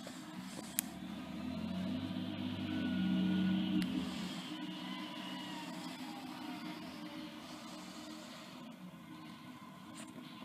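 Rear-loading garbage truck's natural-gas engine and hydraulic packer running: the engine rises to its loudest about three seconds in, then eases back, with a faint whine over it. There are two sharp clicks, one near the start and one as the sound peaks.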